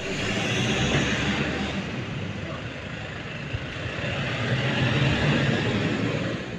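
A car's engine and tyres with outdoor traffic noise, a steady rushing sound that swells a little in the second half as a white SUV moves off.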